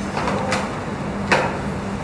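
Air-resistance rowing machine in use: its sliding seat and handle moving, with a steady whirr from the fan flywheel. There is a light click about half a second in and a sharp clack about a second and a third in as the rower gets off the machine.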